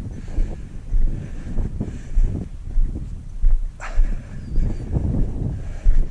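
Footsteps of a person walking up a steep, rough hillside through low scrub and loose stones, a thud about every half second to second, with a few brief scratchy sounds in between.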